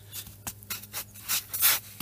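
A hand rubbing and brushing loose dirt across a polystyrene foam surface, a run of short scratchy swipes.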